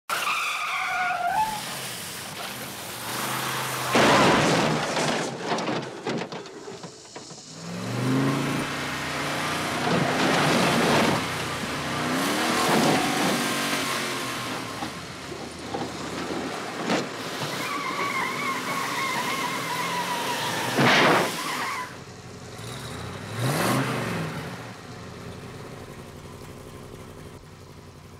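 Film sound effects of the 1958 Plymouth Fury's engine revving in rising and falling sweeps, with a long tyre squeal, and two heavy crashes, about four seconds in and again at about 21 s.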